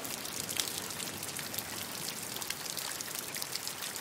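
Steady water sound: a dense patter of small drops and splashes, which cuts off abruptly at the very end.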